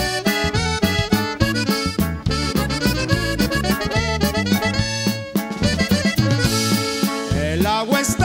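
Instrumental intro of a Mexican corrido, played by an accordion-led band over a bouncing bass line and a steady beat.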